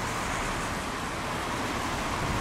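Steady road traffic noise: an even rumble and hiss with no distinct events.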